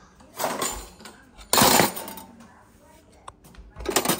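Metal kitchen utensils in a crowded drawer rattling and clinking as a hand rummages through them for a pizza cutter. The loudest rattle comes about a second and a half in, followed by a few scattered clinks near the end.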